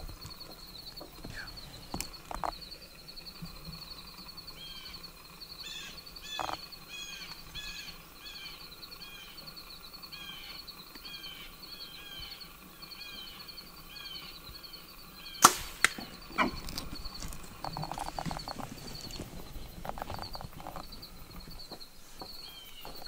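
Bow shot: one sharp, loud crack about two-thirds of the way through, followed by two quieter knocks and a spell of rustling. Under it a steady high insect drone runs throughout, and a bird calls in repeated short chirps in the middle.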